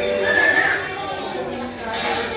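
Voices chattering in a hall, with a short high-pitched voice sliding up and down in the first second.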